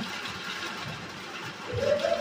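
Steady low background noise with no distinct event, and a faint brief voice-like tone near the end.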